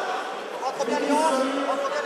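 Several voices talking and calling out at once, overlapping and indistinct, over the chatter of a crowd.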